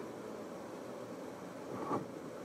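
Steady background hiss of room noise with no distinct events, and a brief faint swell just before the end.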